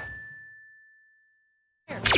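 A single bright cartoon 'ding', one clear ringing tone that fades away over about a second and a half into near silence. A sudden loud noise cuts in right at the end.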